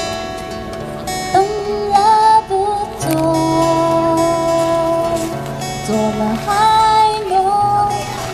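Two acoustic guitars played together, strummed and picked, under a woman singing a slow ballad melody with long held notes.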